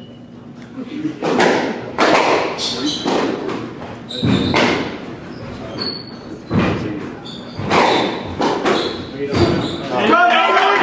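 A squash rally: the ball cracking off rackets and thudding against the court walls, about a dozen sharp, echoing hits at an uneven pace. Short high squeaks of shoes on the wooden floor come between the hits.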